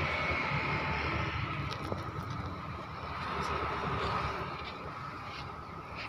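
Steady rumble of road traffic with a faint held hum, and a few faint clicks.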